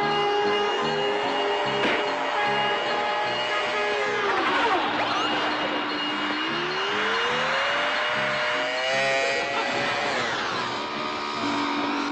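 Cartoon soundtrack: a small motorbike engine sound effect revving, its pitch climbing in the first second or so, dropping about four seconds in, climbing again and dropping near ten seconds. It plays over background music with a steady, repeating low beat.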